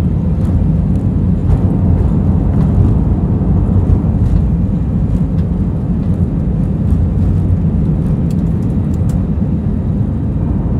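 Airliner cabin noise during the takeoff run and climb-out: jet engines at takeoff power and runway rumble, heard as a steady, loud, low rumble with faint light rattles.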